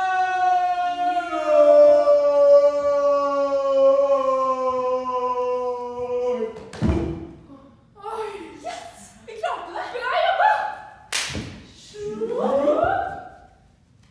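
A single voice holds one long, loud cry for about seven seconds, slowly falling in pitch. It ends in a heavy thud, a body dropping onto the stage floor. Short gasping exclamations follow, with another thud about eleven seconds in.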